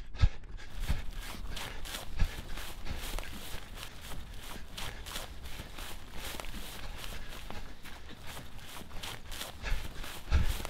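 A person running through grass, with quick, irregular footfalls and rustling, several steps a second.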